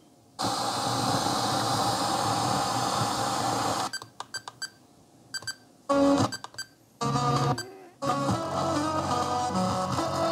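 FM radio of a Panasonic RQ-NX60V personal radio cassette player, heard through a small external speaker, being tuned: a steady hiss of static for the first three and a half seconds, then a quick run of button clicks, then music from a station coming in, cut by brief silences as it changes, steady for the last two seconds.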